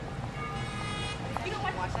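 City street traffic with a steady low rumble, and a car horn honking once, for most of a second, about half a second in. A man's voice follows near the end.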